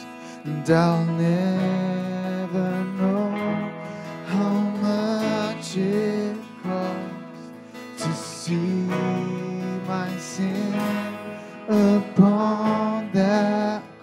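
A live band playing a slow song: strummed acoustic guitar with electric guitar and keyboard, and a voice singing a melody over it.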